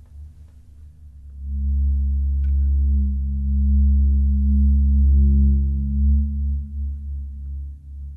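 Low, dark sustained drone of film-score music, a deep hum with a few held tones above it, swelling up about a second and a half in, holding, then easing off near the end.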